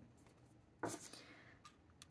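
Near silence: quiet room tone, broken about a second in by one brief, soft rustle that fades within half a second, and a faint click near the end.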